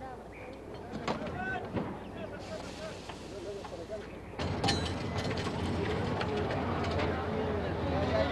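Unclear background voices of a work crew and a few sharp knocks as they work at the wheels of a derailed railway car; about four seconds in, a louder steady low rumble comes in.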